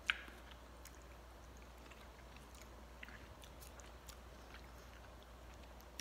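Faint chewing of a mouthful of ramen noodles: soft, scattered mouth clicks, with one sharper click at the very start.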